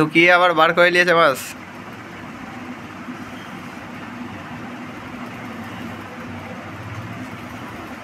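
A voice speaks for about the first second and a half, then a steady low hum with no speech for the rest.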